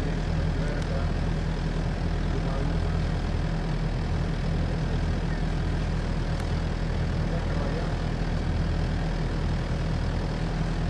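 A steady low mechanical drone, like a distant engine, holding an even level throughout with no breaks.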